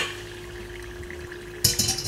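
A knock at the very start, then a steady low hum, then near the end a kitchen tap turned on and water gushing into a pot, filling it with cold water.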